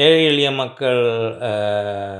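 Only speech: a man talking slowly, drawing out a long, level-pitched vowel in the second half.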